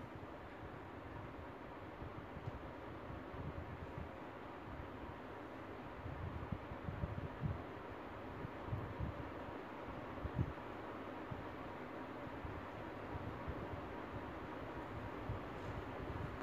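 Quiet, steady background hiss with uneven low rumbling beneath it and a few faint soft bumps partway through.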